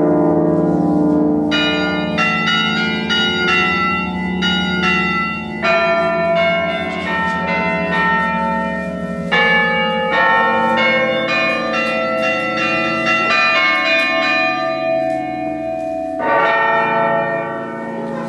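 Electronic carillon played from a keyboard, its bell sounds sampled from the Liberty Bell (Laisvės varpas): a melody of struck bell notes, each ringing on and overlapping the next, over steady low bell tones.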